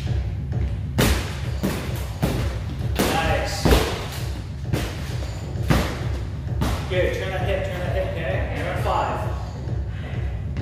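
Gloved strikes landing on a free-standing heavy punching bag: a series of irregularly spaced thuds, over background music with a steady low beat.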